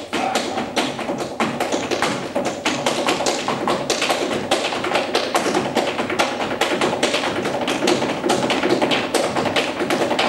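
Flamenco palmas and percussive taps in a rapid, steady rhythm of sharp strikes, over flamenco guitars playing a soleá.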